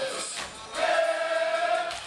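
A group of voices singing in unison, holding one long note for about a second.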